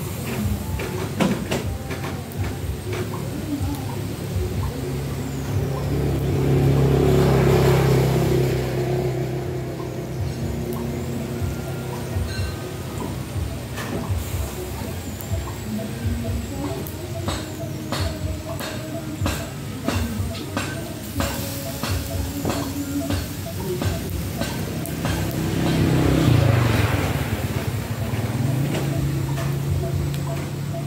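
Snails grilling on a wire rack over charcoal, with scattered sharp crackles and pops, thickest in the middle stretch. Over a steady low hum, a louder swell like a passing vehicle rises and fades twice: once about a quarter of the way in and again near the end.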